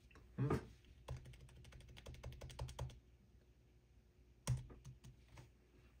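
Rapid keystrokes on a computer keyboard, about ten clicks a second for two seconds, then after a pause a single louder knock.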